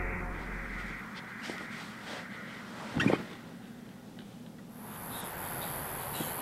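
Eerie film score dying away, then a few faint clicks and a single sharp thump about halfway through. Near the end a steady high hiss of outdoor night ambience comes in.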